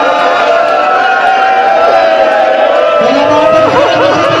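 A man's voice chanting a masaib lament through a microphone in long, drawn-out held notes, with a mourning crowd behind it.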